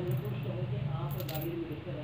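Small metal guitar bridge pins clinking together in a hand, a brief cluster of light metallic clicks about a second in.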